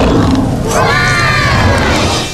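Children cheering and shouting over a loud, low cartoon dinosaur roar, with the sound starting to fade near the end.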